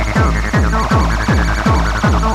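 Acid hardcore techno: a fast, steady kick drum whose every beat drops in pitch, under a stepping, squelchy acid synth line.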